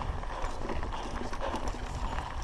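Raleigh MXR DS 29er mountain bike riding along a dirt track: a steady low rumble from the tyres rolling on the loose surface, with irregular small rattles and clicks as the bike goes over bumps.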